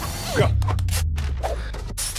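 Film score with a held low bass note under a fast run of short rustles and clicks from hurried baby-care handling, with a baby-powder bottle squeezed near the end.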